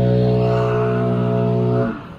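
A man's voice holding one long, low, steady note, likely a hum or a drawn-out sound. It sags and fades out just before the end.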